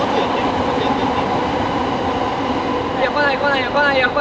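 Electric commuter train running past, a steady rail noise; players' voices come in over it near the end.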